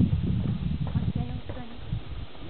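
Wind buffeting the microphone as a low, uneven rumble, with faint voices in the background.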